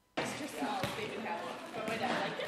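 Indistinct chatter of many voices in a large, echoing school cafeteria, starting suddenly, with a sharp thump just under a second in and another near the end.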